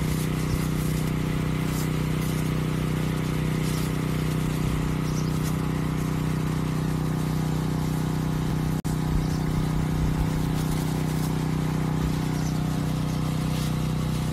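A power sprayer's motor-driven pump running with a steady hum while a fine water mist hisses out of the spray wand over garden plants.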